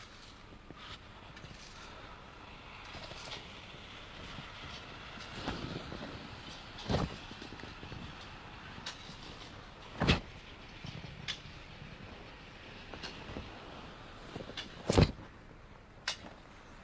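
Feet stepping and stamping on paving during a Xingyiquan form: several soft thuds and three sharp, louder stamps, the loudest near the end.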